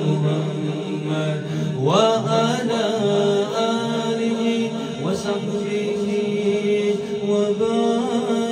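A man singing a devotional kalam into a handheld microphone, in long drawn-out notes, with a rising vocal slide about two seconds in.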